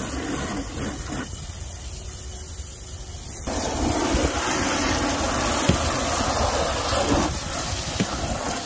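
Garden hose water running and splashing over a muddy Jeep Wrangler's frame. About three and a half seconds in, a much louder steady hiss and spatter begins as a jet from the hose nozzle sprays hard against the fender and into the wheel well, easing a little near the end.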